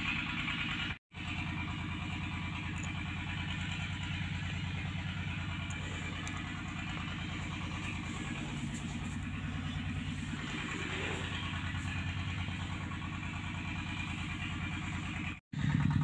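A motor running steadily with a fast, even pulse. It cuts out to silence twice, very briefly, about a second in and near the end.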